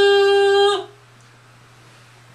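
A man's voice holding one long, steady note on a drawn-out "uh", which cuts off less than a second in. After that only a faint steady low room hum remains.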